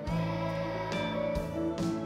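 Instrumental backing music in a gap between sung lines of a children's holiday song: plucked-string chords, with a new chord or note struck roughly every half second.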